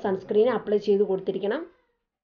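A woman speaking in a high, lively voice. The speech cuts off suddenly near the end.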